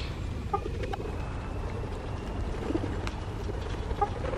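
A few short, faint bird calls over a steady low background rumble.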